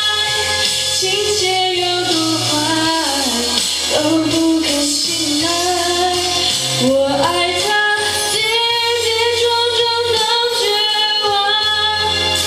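A young woman singing a Mandarin pop ballad into a microphone over a backing track with sustained low bass notes, in the repeat chorus that is being worked on for breath support and sustained phrases.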